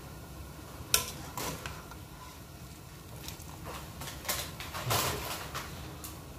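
A wire skimmer knocking and clinking against a large metal cooking pot while vegetables are lifted out of boiling broth. There is one sharp clink about a second in, a few lighter knocks, and a louder clatter near five seconds, over a low steady rumble.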